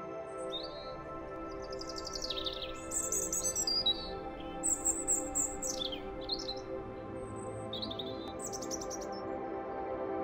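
Ambient background music with sustained tones, with birds chirping over it in short, high, quick calls, most densely between about two and six seconds in.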